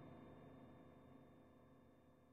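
Near silence: a faint sound with a few steady tones, slowly fading away.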